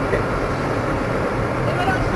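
Steady road and engine noise heard inside a moving car's cabin, an even low rumble with no sudden sounds.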